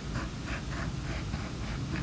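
Faint rubbing strokes of drawing on a tablet touchscreen, several short soft strokes a second, over a low steady hum.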